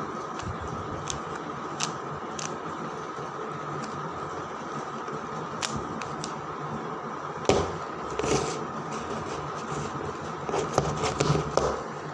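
Plastic 3x3 Rubik's cube being turned by hand: scattered clicks of the layers snapping round, with a quicker run of turns a little past halfway and another near the end, over a steady background hiss.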